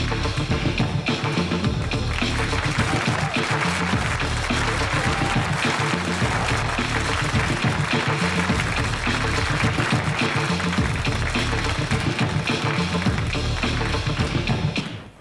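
Funk dance track with a steady heavy beat playing for the stage performance, with audience applause joining in over the middle of it.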